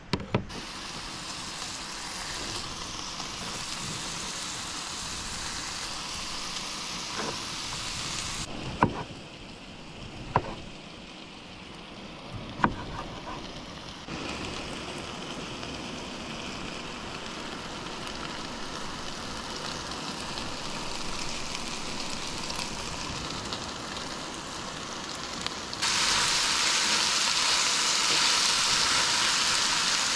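Ground meat and diced potatoes sizzling in a skillet on a propane camp stove, a steady frying hiss. A few sharp clicks of a utensil against the pan come in the first half, and the sizzle is louder for the last few seconds.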